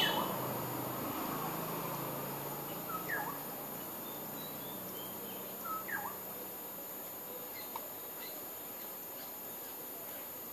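Outdoor ambience: a bird gives short chirps that sweep downward, about three and six seconds in, with fainter chirps later, over a steady high insect drone.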